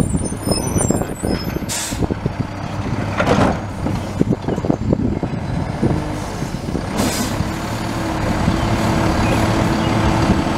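Automated side-loader recycling truck's diesel engine and hydraulic lifting arm working as the arm grips a recycling cart, raises it over the hopper and tips it, with clattering as it goes. Two sharp hisses of released air come at about two seconds and seven seconds in.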